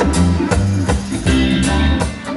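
Live reggae band playing, with a heavy bass line, drums and electric guitar.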